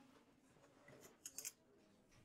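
Near silence: classroom room tone, with a few faint short clicks about a second and a quarter in.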